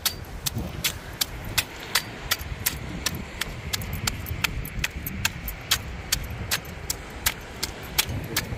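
Curved knife blade scraping the large scales off a parrotfish in quick, even strokes, each a sharp crisp scrape, about three a second.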